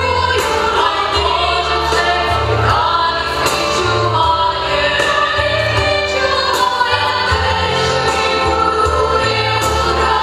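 A large group singing together into microphones, amplified over a backing accompaniment with a moving bass line and a steady beat.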